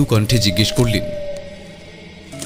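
Background music of a horror audio drama: one long held tone that fades out about a second and a half in, with a voice speaking over it in the first second.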